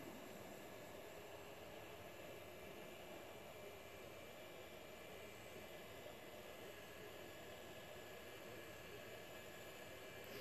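Faint, steady hiss of a hot-air rework station's airflow, heating solder paste to reflow surface-mount capacitors on a circuit board.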